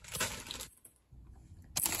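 A plastic bag of carrots crinkling as it is handled: a short rustle at the start, then a louder one near the end.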